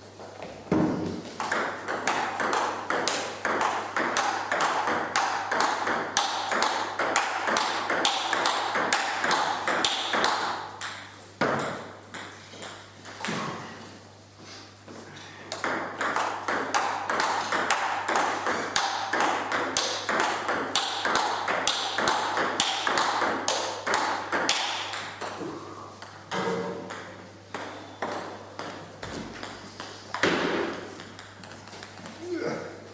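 Table tennis ball hit back and forth with paddles and bouncing on the table in fast rallies: a rapid run of sharp clicks, with a few seconds' pause near the middle before a second long rally.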